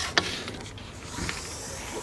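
Fishing pole being handled: one sharp click, then faint rubbing and rustle.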